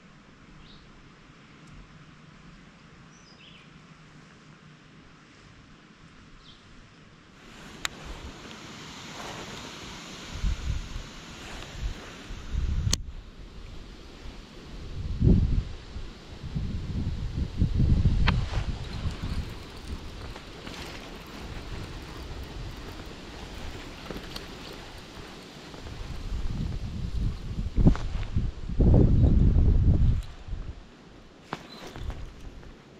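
Wind buffeting the microphone in low gusts that come and go, after a quiet first few seconds; a few sharp clicks break in.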